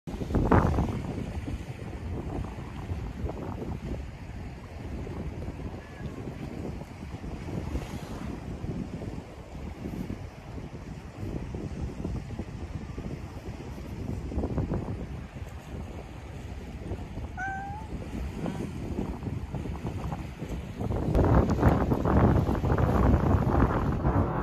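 Wind rumbling on the microphone over the wash of sea waves at a seawall, with louder gusts right at the start and again near the end. A short rising animal call comes about two-thirds of the way through.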